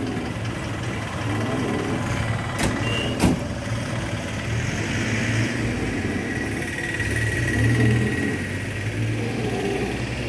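Street traffic: motor vehicle engines running and passing on the road, with two sharp clicks a little under three seconds in and again about half a second later.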